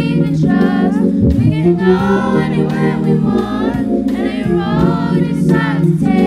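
A group of young voices, women and children, singing a gospel song together into microphones over sustained low held chords.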